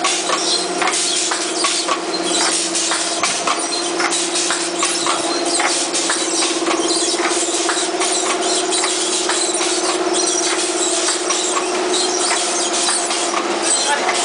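Plastic patch-bag making machine running: a steady hum with continuous fast, irregular clicking.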